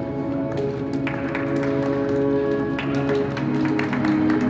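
Figure skating program music with slow, held tones, with a scattering of sharp taps and clicks over it from about a second in.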